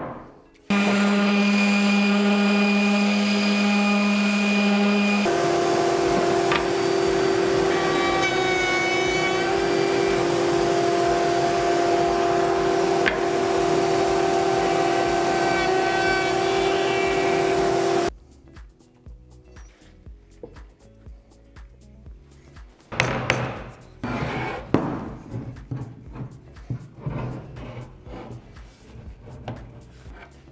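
A stationary woodworking machine's motor runs with a steady hum and whine while a curved wooden part is shaped on it. Its pitch steps up about five seconds in, and the sound stops abruptly just past the middle. Lighter knocks and clatter of wood and clamps being handled follow.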